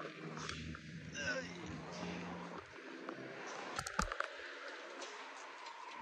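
A faint, indistinct person's voice, with a few sharp clicks just before four seconds in.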